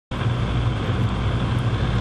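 Steady, loud rumbling noise with a low hum underneath.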